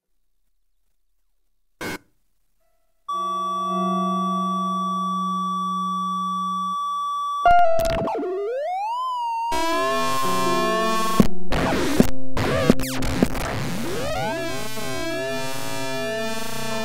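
Free improvised electroacoustic music on electric guitar with computer electronics, and snare drum with modular synthesizer. After a near-silent start and a single click, steady electronic tones enter about three seconds in; a loud attack just past the middle brings gliding pitches, then the sound thickens into a dense mass of sliding tones with sharp hits.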